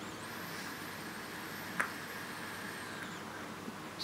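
Faint hiss of a long drag being drawn through a tube-style e-cigarette, lasting about three seconds with a thin high whine over it, and a single click near the middle.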